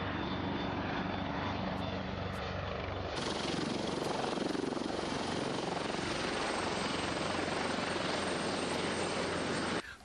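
Airbus Super Puma twin-turbine helicopter flying low and hovering: a steady rotor and turbine noise with a low, even rotor beat underneath. The sound changes in character about three seconds in.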